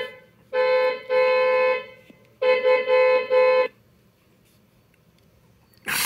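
Vehicle horn honking at one steady pitch: two blasts, a short pause, then three more in quick succession.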